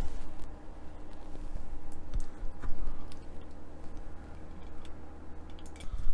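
A steady low hum with a handful of light, scattered clicks and taps, as of small handling on a work desk.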